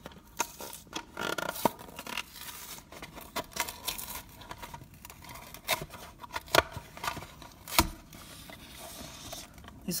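A blister pack's paper card being torn and peeled open by hand, heard as an uneven run of scratchy ripping with sharp snaps, the loudest about two thirds of the way through.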